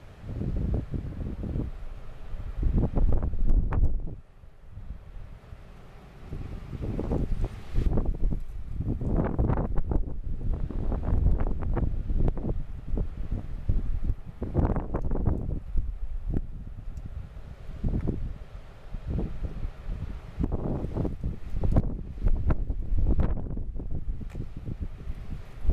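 Gusty wind buffeting the camera microphone in irregular low rumbling blasts that rise and fall every second or two.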